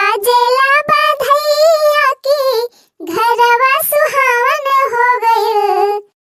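A high-pitched female voice singing a folk-style birthday song of congratulation (badhai geet) unaccompanied, in wavering phrases with a short break about halfway through.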